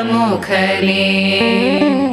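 A group of women singing a devotional chant in unison, the melody sliding between long held notes over a steady drone.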